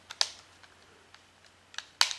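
Rigid plastic bumper frame being snapped onto an Anker iPhone battery case: a sharp click just after the start, a few faint ticks, then a louder click near the end as the clips catch.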